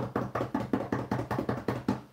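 Quick improvised drum roll: hands drumming rapidly on a tabletop, about eight taps a second, stopping just before the end.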